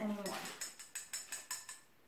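Yellow plastic mixing spoon clicking against a petri dish while sugar is stirred into water, a quick run of light ticks, about six or seven a second, that stops shortly before the end.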